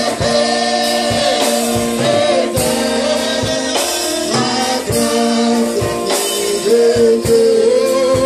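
Church congregation singing a gospel song together, with a steady beat about twice a second.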